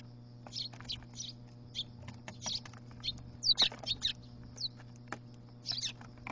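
Eurasian tree sparrows chirping in short, high, irregular calls as they feed, with a quick burst of loud chirps about three and a half seconds in, over a steady low hum.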